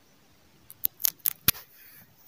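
A quick run of sharp clicks about a second in, the last one the loudest: fingers tapping and handling the phone that is recording.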